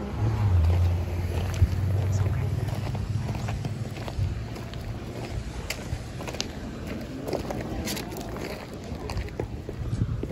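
Outdoor ambience while walking with a handheld phone: a low rumble in the first few seconds that then dies down, with light, irregular footsteps on dirt and paving and faint voices in the background.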